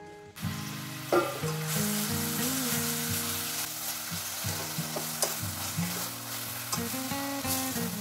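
Grated carrot sizzling in hot oil in a stainless steel pot, stirred with a spatula, with a few sharp clicks of the spatula against the pot. The sizzling starts about a third of a second in and holds steady.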